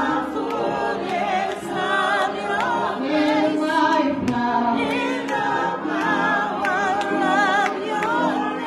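Small church choir singing together, the voices wavering with vibrato, with a sharp tap on the beat about once a second.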